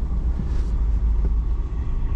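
Truck's diesel engine idling steadily, a low rumble heard from inside the cab.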